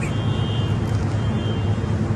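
Steady low mechanical hum of restaurant kitchen equipment such as a grill-hood extractor fan, running evenly with no change.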